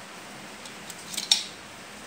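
A few small sharp clicks of a blue SC fibre-optic connector being pushed into the optical port of a bare HTB-3100 fibre media converter board. The loudest, a single sharp snap, comes a little past halfway.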